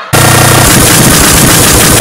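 A sudden, extremely loud, distorted and clipped blast of noise that starts abruptly, holds for about two seconds and cuts off sharply. A falling pitch sweep comes at its end. It is the kind of deliberately overdriven loud edit typical of YouTube Poop.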